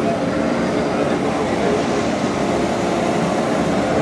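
Compact excavator's diesel engine and hydraulics running steadily as the arm swings a screening bucket on a tiltrotator: an even hiss with a low steady hum under it.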